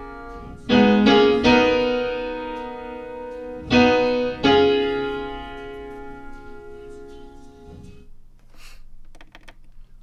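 A live, mic'd-up acoustic piano stem playing chords, struck about a second in and again near four seconds, each ringing out and fading away by about eight seconds. After that only faint room noise and a low hum remain.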